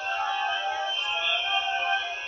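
A congregation singing together, many voices holding long overlapping notes with no clear beat, heard through a thin, narrow-band recording.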